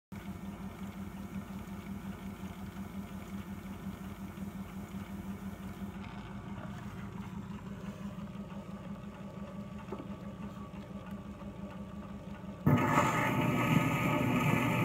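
Phonograph playing a 78 rpm shellac record: a low steady hum with faint surface noise from the turntable and the stylus in the lead-in groove. Near the end the recorded jazz piano with rhythm section starts suddenly and much louder.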